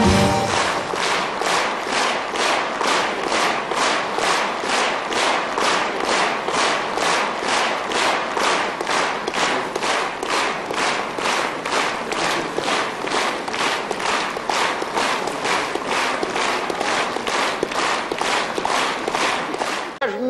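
A large audience clapping in unison in a steady rhythm, about two claps a second.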